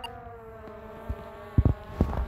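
Skydio R2 drone's propellers buzzing, a steady whine that drifts slowly down in pitch, with a short thump about one and a half seconds in.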